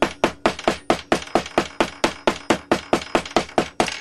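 A hammer pounding Delft clay (fine casting sand) into a casting block, packing it tight to take a mould. The strikes are quick and sharp at an even pace, about five a second.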